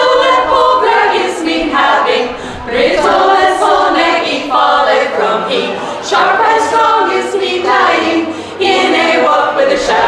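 A women's choir singing together, the phrases broken by short pauses for breath every few seconds.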